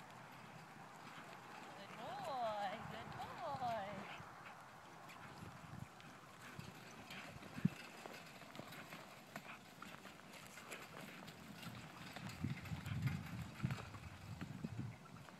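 A miniature horse's hooves clopping on dry ground as it pulls a light cart, the steps growing louder near the end. A person's voice is heard faintly about two to four seconds in.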